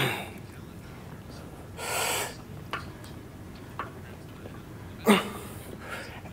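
A man's breathing and short grunts while pulling a lat pulldown: a loud hissing breath about two seconds in, and a brief grunt falling in pitch near the end, with a few faint clicks between.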